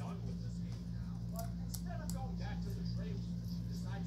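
A steady low hum with faint voices in the background, and a few faint small clicks as a tiny screw is turned by hand into a plastic SSD enclosure.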